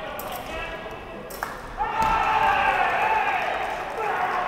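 In a large hall, a short electronic beep from a fencing scoring machine, a sharp click about a second and a half in, then a loud drawn-out cry from a fencer lasting nearly two seconds, rising briefly and then falling slowly in pitch, as a touch is scored.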